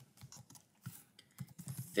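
Typing on a computer keyboard: irregular key clicks, coming thicker in the second half.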